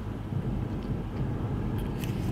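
Steady low rumble of background noise, with a faint click near the end.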